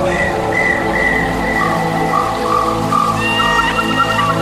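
Instrumental music: a pan flute melody of held high notes over a steady sustained backing, with a second, lower line of notes coming in about halfway through.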